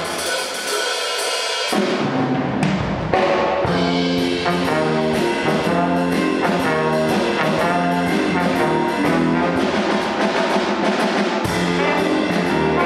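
Big band playing jazz: saxophones, trombones and trumpets over drum kit. For the first two seconds only the higher horns play, then the low instruments come back in, with a low accent about three seconds in, and the full band carries on.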